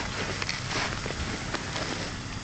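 Suzuki 4x4 off-roader's engine idling with a steady low hum, with a few faint clicks.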